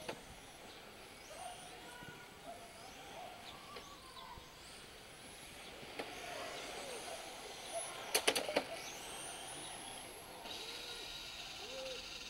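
Electric RC touring cars running on the track: thin, high-pitched motor and drivetrain whines that rise and fall as the cars accelerate and pass. A quick run of sharp clicks a little past the middle is the loudest sound.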